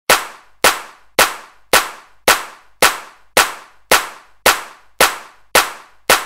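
Hand claps with added reverb, keeping a steady beat of just under two claps a second, as the rhythm that opens a Bathukamma song. Each clap is sharp and dies away quickly in an echo.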